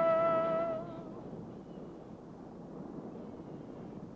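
A man's voice holds the last sung note of a folk ballad and fades out about a second in. A faint, steady rushing noise follows.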